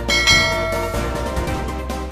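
A bright bell-chime sound effect rings once and fades over about a second, laid over steady background music: the ding that marks the notification bell being clicked.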